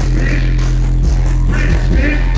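A hip hop beat played loud through a concert PA, carried by a deep, sustained bass line that slides briefly down in pitch about every second.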